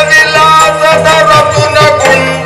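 Yakshagana music: a male bhagavata singing a long, wavering held line over a steady drone, with drum strokes marking the beat.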